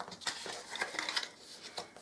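Light, irregular clicks and scrapes of a burnishing tool pressed and drawn along the score lines of folded card stock.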